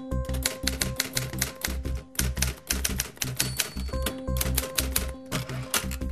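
Typewriter key-click sound effect in a fast run of clicks with a couple of brief pauses, typing out on-screen text, over music with a pulsing bass beat and a held tone.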